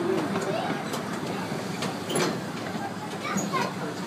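Park ride train rolling slowly into its covered station: a steady running rumble with indistinct voices of people on the platform, and a single knock about two seconds in.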